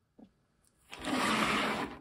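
Small metal pipe fittings being handled: a light click, then about a second of dense rasping noise.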